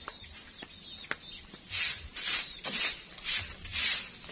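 A broom sweeping dry, packed dirt ground. Short scraping swishes come about two a second, starting a little before halfway through.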